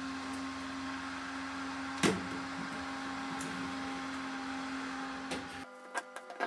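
Built-in electric oven humming steadily, its door open, with one sharp metal clank about two seconds in.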